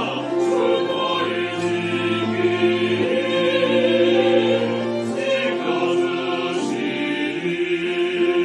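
Small mixed choir of men and women singing a hymn in Korean in long held notes, with violin and cello accompaniment.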